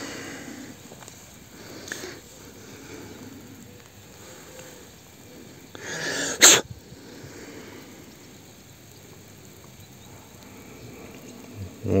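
A person sneezing once, about six seconds in: a short build-up, then a sharp burst, over a faint background.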